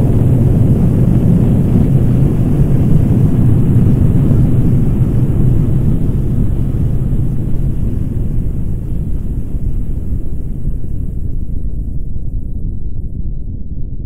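Nuclear explosion rumble: a long, deep, steady roar. Its higher frequencies die away over the last few seconds while the low rumble carries on.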